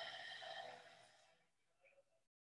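A person's long, soft out-breath, a sigh, that fades away after about a second and a half.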